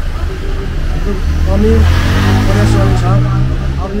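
A motor vehicle passes close by. Its engine note rises and is loudest about two seconds in, under a man talking in Nepali.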